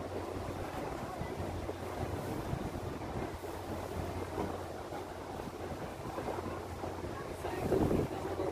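Steady low engine hum of a river sightseeing boat under way, with wind rushing over the microphone.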